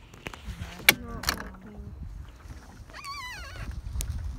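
Sharp knocks against a small fishing boat as a fish is reeled in, over a low rumble of wind and water. Near the end comes a short vocal sound that wavers and falls in pitch.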